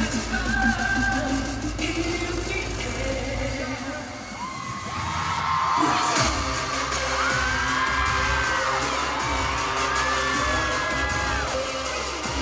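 Live K-pop dance track played loud through a concert PA and recorded from the audience. The beat thins out into a short build about four seconds in, then drops back in with a heavy hit about six seconds in, followed by a pounding bass beat with sliding synth lines.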